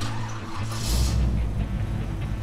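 Car sound effect: a steady engine rumble with a brief skid-like hiss just under a second in.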